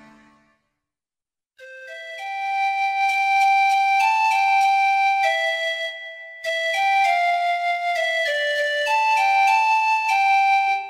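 Instrumental music with a flute melody of held notes. It starts about a second and a half in after a short silence and pauses briefly near the middle.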